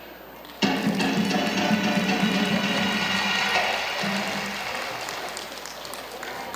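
Amplified live band music: a loud full chord hits about half a second in and is held, slowly fading.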